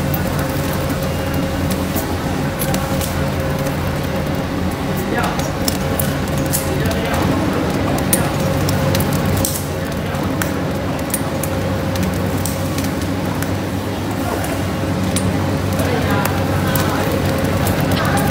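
Two-roll rubber mill running with a steady hum and a constant mid-pitched whine, while the silicone rubber sheet on its steel rollers crackles and clicks as it is worked and mixed with black pigment.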